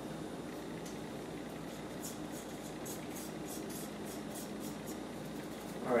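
Soft, irregular scraping and tapping as ground coffee is scraped with a finger out of an electric grinder's cup into a French press, over a steady low hum.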